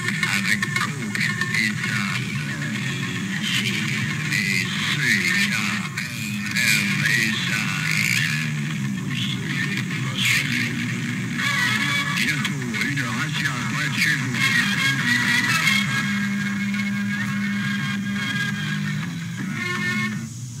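An old radio archive recording played back: music with voices, running steadily throughout.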